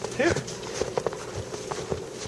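Irregular crunching footfalls in deep snow, a string of soft thuds about every quarter to half second.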